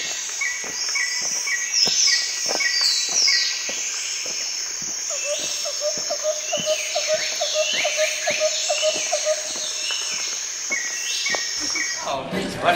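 Outdoor birdsong: several birds calling with short repeated and sliding high notes over a steady high-pitched insect drone. A lower pulsing trill joins from about the middle, and faint ticks recur throughout.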